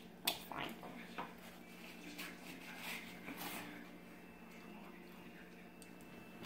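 Small plastic Lego bricks being handled and pressed together: one sharp click just after the start, a few smaller clicks within the next second, then light clatter and rustling of pieces.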